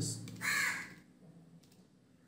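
A single bird call about half a second long, heard just under half a second in.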